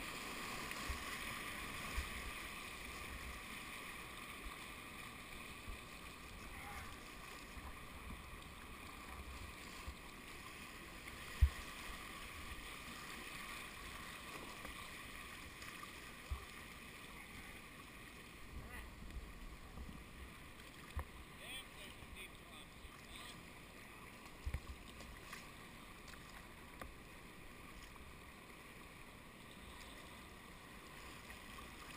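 Steady rush of a whitewater river running high, heard from a kayak in the current. Scattered low knocks come from the paddle and hull, the sharpest about eleven seconds in.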